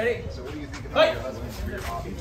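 Two short vocal exclamations from a man's voice, one at the start and one about a second in.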